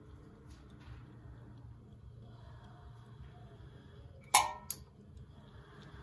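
A steel electrical junction box clanks onto the hard floor about four seconds in, with a second, smaller clank just after as it bounces.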